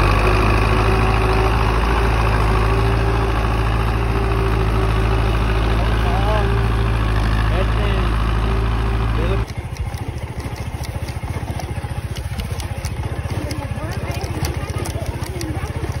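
Belarus tractor's diesel engine running steadily under load, pulling a seed drill across the field. About nine and a half seconds in, the sound drops abruptly to a quieter engine with a fast, even ticking, a motorcycle being ridden over the stubble.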